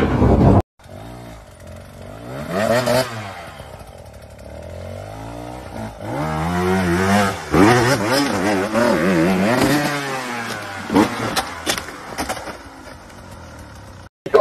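Dirt bike engine revving up and down in repeated bursts as the bike is ridden up over rocks, with a few sharp knocks near the end as the bike goes down on the rocks.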